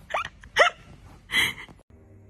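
A person laughing hard in three short, high, squeaky bursts, each rising in pitch, cut off abruptly near the end.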